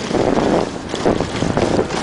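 Wind rushing over the microphone of a camera carried downhill at speed on a ski run, in uneven loud gusts, mixed with the scrape of snow under the rider.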